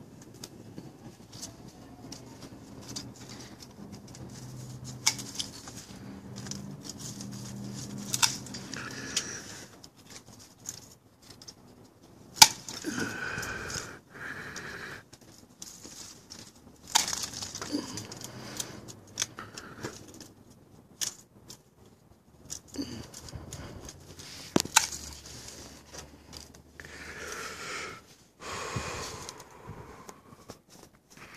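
Hand pruning shears snipping thorns and twigs off a citrus tree: about five sharp snips a few seconds apart, between stretches of rustling leaves and branches.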